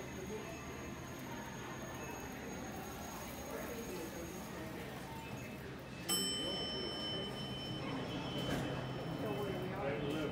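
Elevator arrival chime on an MEI hydraulic elevator: a single ringing tone starts suddenly about six seconds in and holds for a few seconds, marking the car's arrival as the doors slide open. Before it, only faint background voices and music.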